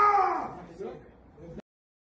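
A man's voice shouting a curse with a strained, falling pitch, then cut off abruptly by silence about a second and a half in: the profanity is muted out.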